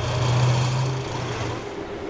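Tank engine running with a steady low hum that fades about a second and a half in.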